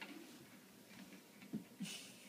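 Quiet room tone, with a couple of brief faint sounds and a short hiss near the end.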